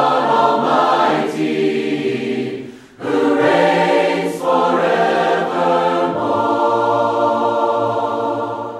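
A choir singing slow, long-held chords, breaking off briefly about three seconds in before holding the next chord.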